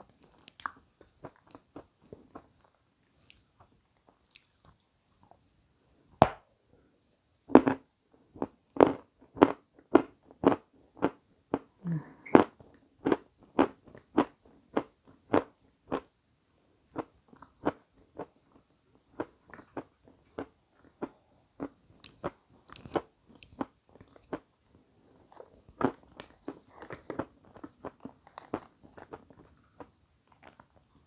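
A person chewing crisp meringue cake close to the microphone: crunching bites, sparse at first, then a steady rhythm of about two crunches a second from about six seconds in, with a short break near the middle.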